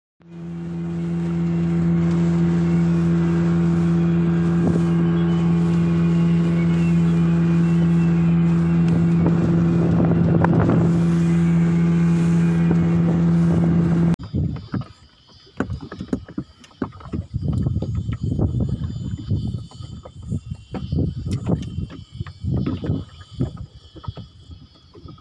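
Outboard motor pushing a small aluminium boat at a steady cruising speed, one unchanging engine note that fades in at the start and cuts off suddenly about halfway through. After that, uneven gusts of wind on the microphone and water slapping and knocking against the hull of the stopped boat.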